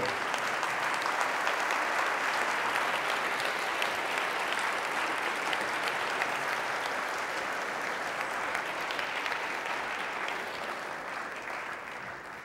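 A large audience applauding steadily, tapering off over the last couple of seconds.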